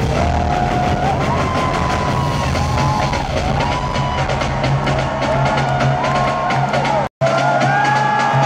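Live arena pop concert music heard from the audience, with a steady pounding bass beat and a wandering melody line over it. The sound drops out completely for an instant about seven seconds in.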